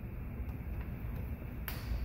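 Steady low background rumble with a single sharp click about a second and a half in.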